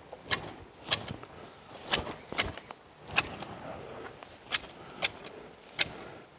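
Hand hedge shears snipping hornbeam foliage: about eight sharp, irregularly spaced snips as the two steel blades close against each other.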